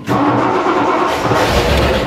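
Mercury pace car's engine starting on a cold start after sitting about seven months: it fires suddenly and keeps running on its own.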